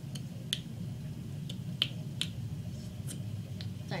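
Sharp, irregular clicks, about seven in four seconds, as a stick of chewing gum is handled at the lips close to the microphone, over a steady low hum.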